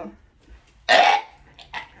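A short, loud, strained vocal burst of effort, a grunt or forced exhale, about a second in, followed by a couple of fainter breathy sounds.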